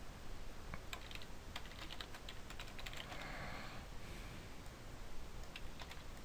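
Computer keyboard typing: faint, irregular key clicks in short runs.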